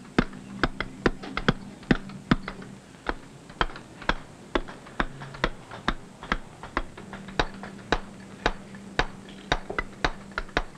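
Mason's mallet striking a steel chisel into a sandstone block, a steady run of sharp taps about three a second as a chamfer and moulding are cut.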